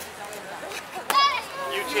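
A child's short, high-pitched shout about a second in, over the chatter of an outdoor crowd.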